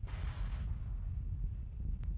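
Steady low rumble of wind on a launch-pad microphone, with a short hiss of venting gas in the first half second from the fuelled Falcon 9 rocket.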